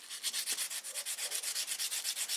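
A ball of crumpled aluminium foil scrubbed back and forth over a chrome-plated bicycle mudguard, a rapid, even rasping of short strokes. The foil is lightly polishing off rust spots from the chrome.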